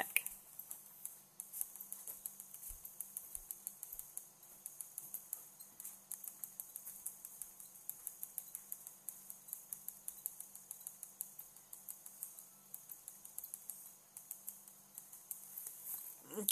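Light, irregular tapping of a stylus pen on a Wacom graphics tablet as colour is dabbed on, several small taps a second, over a faint steady low hum.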